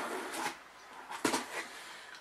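Box cutter blade slicing through packing tape on a cardboard box, a short scraping sound that fades out within the first half-second. A single sharp click follows a little over a second in, with a couple of fainter ticks.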